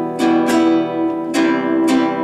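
Nylon-string guitar strummed in a syncopated pattern, Em moving to C. There are about five quick down and up strokes, each chord ringing on between them.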